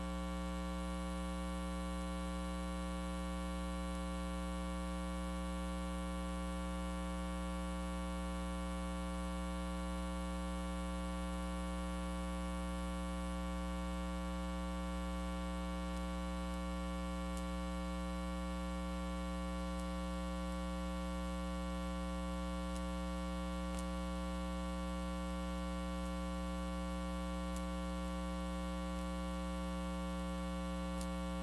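Steady electrical mains hum with a stack of overtones, unchanging in pitch and level.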